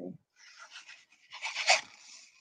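Rustling and rubbing of things being handled close to the microphone, swelling louder about one and a half seconds in.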